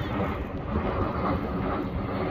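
Steady low rumble of jet aircraft passing overhead unseen, heard about three miles from the airport.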